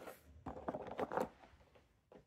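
Small plastic-capped ink sample vials clicking and rattling against each other as fingers rummage through them in a cardboard box: a scatter of light, irregular clicks.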